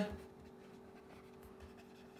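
Faint scratching and light tapping of a stylus writing on a tablet screen, over a low steady hum.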